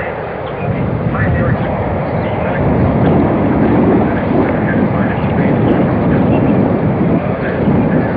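Outdoor street noise: a low rumble that swells about half a second in and stays strong through the middle, with faint voices in the background.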